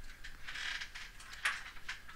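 A few faint, sharp clicks of a computer mouse and keyboard, the clearest two about a second and a half in and just before the end, over a quiet background.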